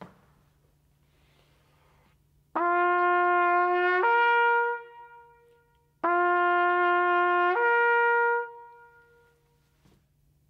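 Trumpet playing a slur from a held G up to a C twice, about three seconds apart. Each time one note is held, then steps cleanly up a fourth, with a short ring-out after the end. It is a brass flexibility (lip slur) exercise, played two ways for comparison.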